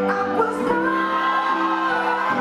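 A song with a singing voice playing, made up of held notes and smoothly gliding vocal lines at a steady level.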